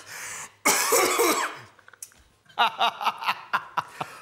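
A man coughing and spluttering hard about a second in, then breaking into a run of short bursts of laughter in the second half.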